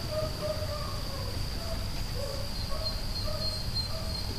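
A string of short, low hooting call notes, repeated at uneven intervals, over a steady high-pitched insect buzz and a low outdoor rumble.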